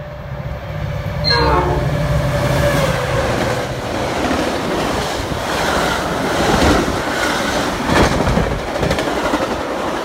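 Metra diesel-hauled commuter train passing at speed. A locomotive rumble and a held horn tone run through the first two seconds or so. The bilevel cars then rush past with a rapid clickety-clack of wheels over rail joints.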